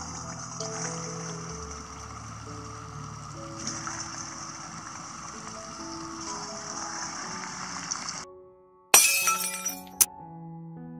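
Rice rolls frying in hot oil in a pan, a steady sizzle under background music. Near the end the sizzle cuts out and a sudden loud crash-like sound effect starts and dies away, followed by music.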